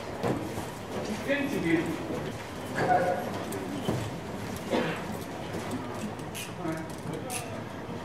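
A horse's hooves on the sand footing of an arena as it moves in collected strides: soft, irregular thuds, with a few words from a man's voice.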